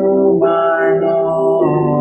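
A hymn sung to instrumental accompaniment, heard through a Zoom call, with long held notes that change pitch twice.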